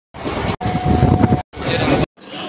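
Moving train running, heard in three short clips cut hard one after another; the middle clip carries a steady tone over the rumble.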